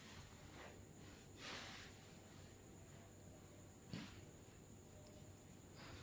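Near silence: room tone, with a faint soft rustle about a second and a half in and a small click about four seconds in.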